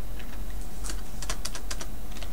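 Computer keyboard typing: a quick run of keystrokes clustered in the second half, over a steady low hum.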